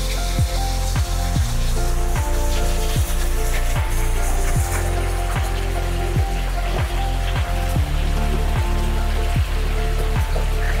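Electronic music with a deep bass drum that drops in pitch about every 0.8 seconds over held bass notes. Under it runs a steady hiss of water falling from the swimming pool's wall spout into the pool.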